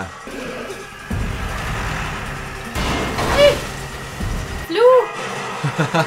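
Action-film soundtrack playing in the room: dramatic music over a low rumble that stops suddenly after about four and a half seconds. A voice cries out briefly near the middle.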